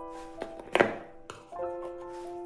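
Plastic power adapter set down into a cardboard box tray: a couple of light taps and one sharper thunk a little under a second in, over soft background piano music.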